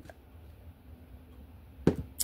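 Deck of oracle cards being cut on a stone countertop: a faint click at the start, then a sharp tap near the end as half the deck is set down, over a low steady hum.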